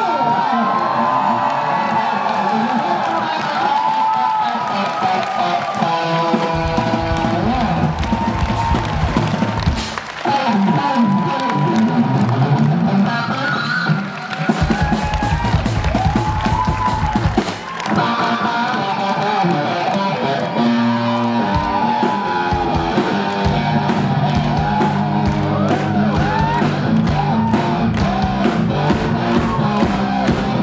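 Live rock band with a string section of violins and cello playing a song, loud and continuous.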